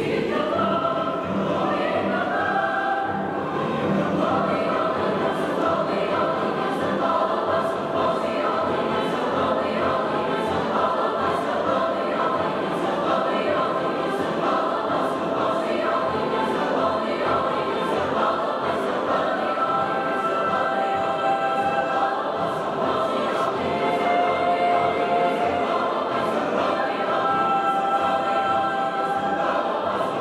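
Large mixed choir singing a slow piece in long, held chords.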